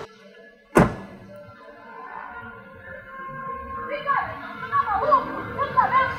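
A car door slams shut once, sharply, about a second in. From about four seconds on, music with a wavering melody comes in.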